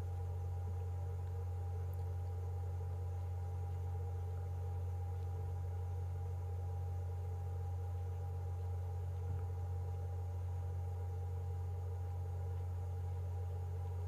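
A steady low hum with faint higher tones above it, holding the same level without any distinct events.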